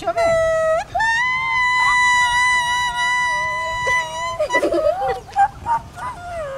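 A green leaf held against the lips and blown as a whistle: a short lower note, then a jump to a steady, high, reedy tone held for about three seconds before it breaks off.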